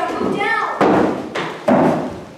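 An actor's voice with an exaggerated, swooping pitch, then two loud thuds on the wooden stage floor about a second apart.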